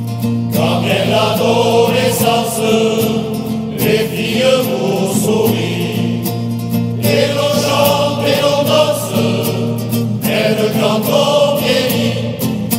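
Background music: a choir singing in phrases a few seconds long over a steady low drone.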